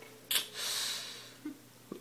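A person's breath: a short sharp burst of air, then about a second of breathy hiss that fades away, with a small click near the end.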